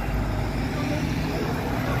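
Minibus engine running steadily close by as it moves past, over general street traffic.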